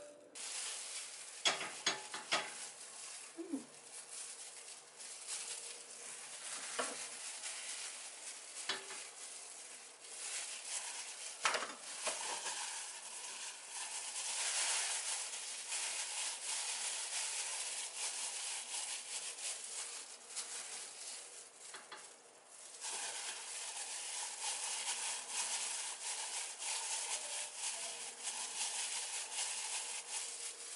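Thin disposable plastic gloves crinkling and rustling as hands press and shape rice balls, with a few light clicks and knocks in the first dozen seconds.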